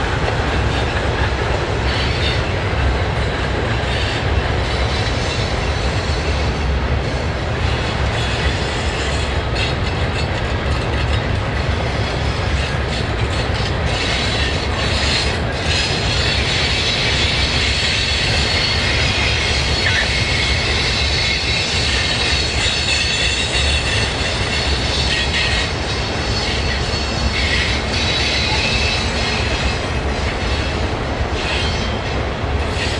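Cars of a heavy Union Pacific freight work train rolling steadily across a steel trestle on a steep downgrade, wheels clicking over the rail and squealing high-pitched, the squeal strongest in the second half.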